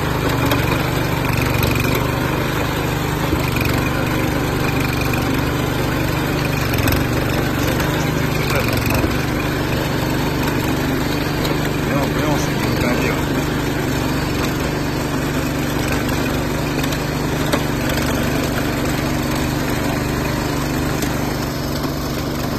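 Small single-cylinder engine of a walk-behind power tiller running steadily under load as its rotary tines work through the mud of a flooded rice paddy.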